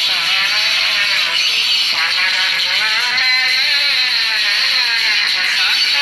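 Devotional kirtan singing: voices chanting a continuous melody with long, smoothly wavering held notes.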